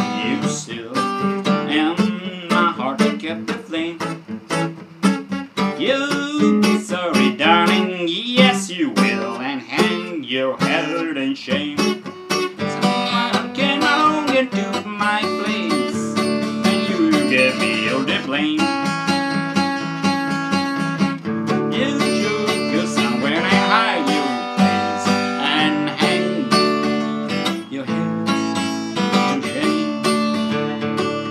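Large-bodied Epiphone acoustic guitar strummed in full chords, with single notes picked between them, a continuous rhythmic accompaniment.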